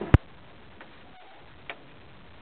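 A single sharp, loud click just after the start, then a fainter click near the end.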